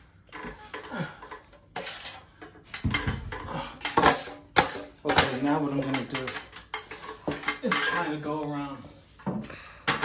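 Drywall taping knife clacking and scraping against a hawk loaded with joint compound, a run of sharp irregular clicks and scrapes, as a light coat is worked onto the ceiling.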